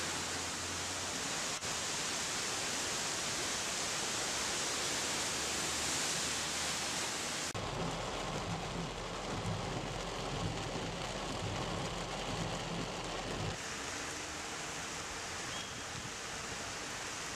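Heavy rain and rushing floodwater, a steady hiss that shifts abruptly in character a few times; for several seconds in the middle a low rumble runs underneath.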